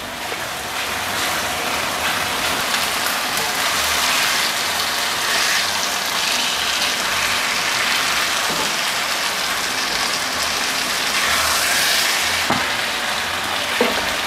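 Marinated chicken thighs sizzling in hot oil in a frying pan, a steady hiss, with a few light scrapes and knocks of a wooden spatula turning the pieces.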